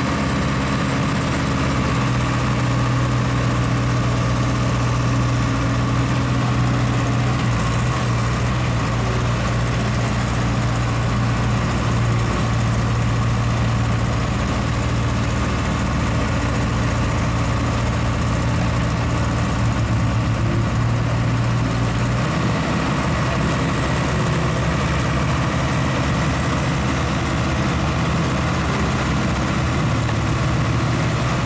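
Diesel engines and silage-handling machinery running steadily as a walking-floor trailer unloads silage into a bagging machine, with a skid steer working alongside. A continuous low engine drone, whose low hum shifts about three-quarters of the way through.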